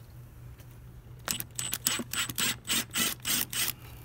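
Makita 18V cordless driver run in short trigger bursts, about three a second, with a thin high motor whine in each burst, backing out a Japanese-standard cross-head screw gently so as not to strip its head.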